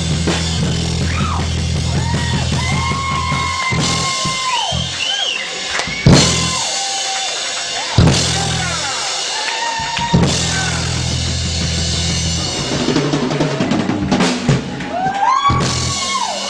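Live rock band's noisy closing section: a loud low bass-and-guitar drone that drops out and comes back, with high sliding, wailing guitar notes over it. Three big crashes on the drum kit, about two seconds apart, stand out as the loudest moments.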